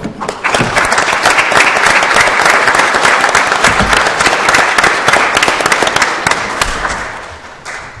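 A roomful of people applauding: many hands clapping together, starting about half a second in and dying away near the end.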